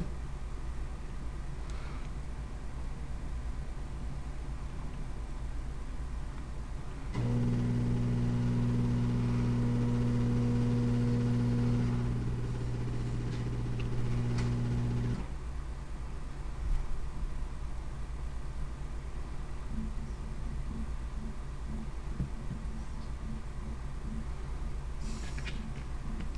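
A steady low machine hum switches on suddenly about seven seconds in and cuts off about eight seconds later, over a faint constant background hum.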